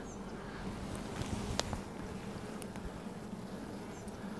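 Honey bees buzzing in a steady hum around an opened hive, from a disturbed, defensive colony. Low wind rumble on the microphone underneath, and one sharp click about one and a half seconds in.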